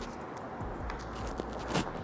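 Quiet gym room tone with faint scuffs from a man coming down a thick climbing rope, and one short sharp sound near the end as his feet reach the floor.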